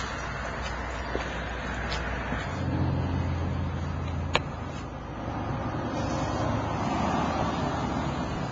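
A motor or engine runs with a steady low hum whose pitch shifts a couple of times. There is a single sharp click about four seconds in.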